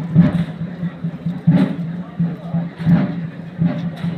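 Slow, evenly spaced drum beats of a procession, about one every second and a half, over a steady low hum and crowd voices.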